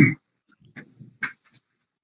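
A man's stifled, wheezy laughter in short breathy bursts: one loud burst at the start, then several quieter ones.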